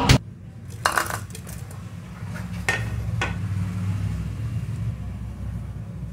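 A few sharp clinks of kitchen utensils against a steel pot, over a low steady hum.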